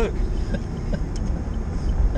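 Steady low rumble of a moving car heard from inside the cabin: engine and tyre noise on the road, with a few faint small ticks.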